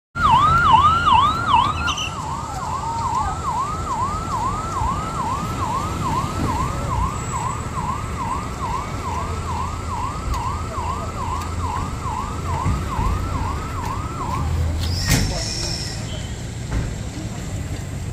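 A vehicle siren on a motorcade sounds in fast, repeated falling sweeps, about two to three a second, over a low traffic rumble. It stops about fourteen seconds in, followed by a brief sharp knock.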